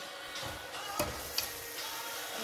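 A spoon stirring thick eru in an enamelled cooking pot, with a few sharp clicks of the spoon against the pot, the clearest about a second in.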